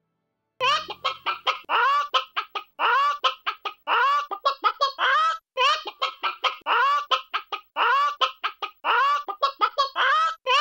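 Chicken clucking in quick runs of short clucks mixed with a few longer drawn-out calls, starting about half a second in after a moment of silence.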